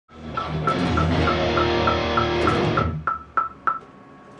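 Guitar and drum music playing over a studio metronome click track, about three clicks a second. The music cuts off about three seconds in, and the click carries on alone for three more beats, then stops.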